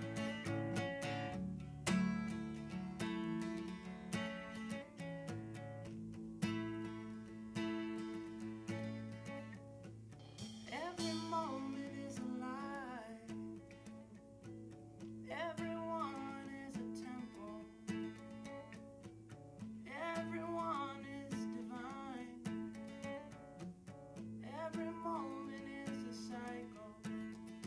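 Steel-string acoustic guitar fingerpicked in a steady run of notes, in a slow song. After about ten seconds a voice comes in with sung phrases, several seconds apart.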